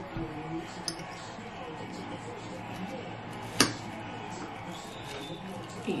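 Background sound of an American football game on a television, with commentators talking. There is a single sharp clink about three and a half seconds in, from a fork on a ceramic plate.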